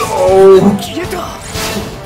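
Anime soundtrack: dramatic music under a character's loud, drawn-out cry that peaks about half a second in.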